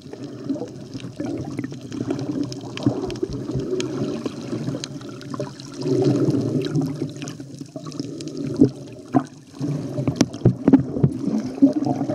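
Water sloshing and gurgling, with scattered sharp clicks and knocks that grow busier in the second half.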